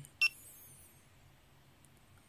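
GoPro Hero3+ action camera giving one short electronic beep with a button click about a quarter second in, as Exit is selected in its setup menu and the camera returns to video mode.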